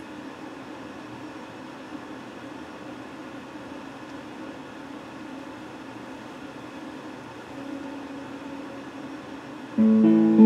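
Electric guitar picked very quietly over a steady hiss. Just before the end, a loud note rings out and holds.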